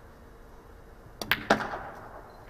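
Pool shot on a Chinese 8-ball table: cue tip striking the cue ball and balls clacking together. Three sharp clicks come in quick succession about a second and a quarter in, the last the loudest.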